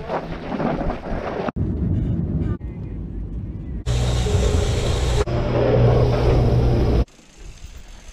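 Mountain-bike riding noise, with wind on the microphone and tyres on loose dirt, broken into short clips that cut off abruptly every second or so. For about three seconds in the middle, a steady low machine hum with a hiss over it is heard, and the sound drops suddenly to a quieter riding segment near the end.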